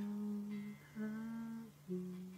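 A voice humming long, steady held notes, one ending just under a second in and the next held for most of a second after it, over a sustained electric guitar note.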